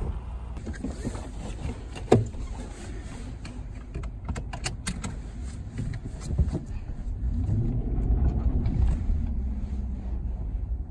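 Nissan Armada SUV's V8 running at idle, with a loud thump about two seconds in and a quick run of clicks a couple of seconds later; near the end the engine note rises as the SUV pulls away.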